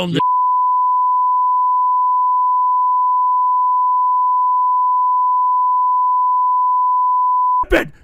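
Censor bleep: a single steady 1 kHz tone held for about seven and a half seconds, blanking out a racial slur, then cutting off abruptly.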